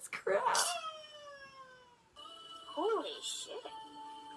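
A cat meowing in one long, drawn-out call that falls in pitch, played from a video clip through a computer's speakers. About two seconds in, music with held notes and sliding pitched notes takes over.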